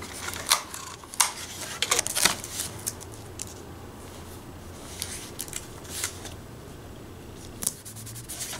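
Clear sticky tape being pulled off its roll, torn and pressed down onto a paper note in a book, giving a few sharp rips and crackles in the first couple of seconds and another near the end. A faint steady low hum runs underneath.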